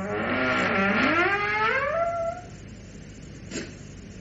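A door creaking slowly open on its hinges: one drawn-out squeal rising in pitch for about two seconds, then stopping. One short click follows near the end.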